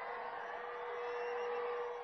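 Noise of a large open-air rally crowd, with a steady single-note tone held throughout, growing slightly louder toward the end.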